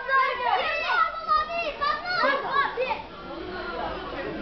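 Spectators, many of them children, shouting over one another in a crowd of overlapping high-pitched voices.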